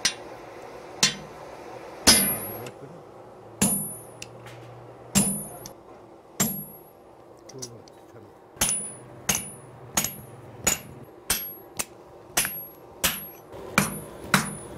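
Hammer blows on hot iron at a blacksmith's anvil, each strike with a short, high metallic ring. The first half has slow, heavy sledgehammer strokes about every second and a half; from about two-thirds of the way in, the blows come quicker, about two a second.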